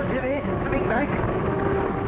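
Steady jet aircraft engine noise heard from inside the cockpit on an old film soundtrack, with a man's voice speaking over it during the first second.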